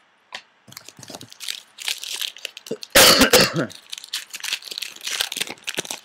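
A man coughing, with the loudest, fullest cough about halfway through, among short sharp clicks and rustles.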